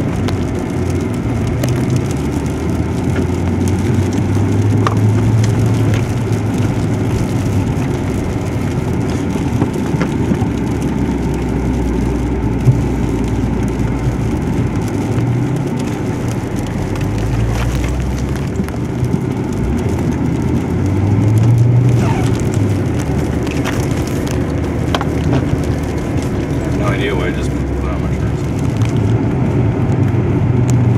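Car engine running with its note rising and falling, heard as a heavy low rumble from inside a car's cabin.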